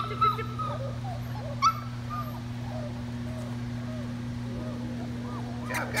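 Four-week-old German Shepherd puppies whimpering in short, faint, wavering calls, with one sharper high yip about two seconds in. A steady low hum runs underneath.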